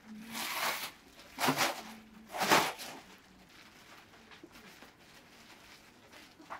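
Plastic bubble wrap rustling and crinkling as it is folded over and smoothed down by hand, in three loud swishes within the first three seconds, then only faint crackles.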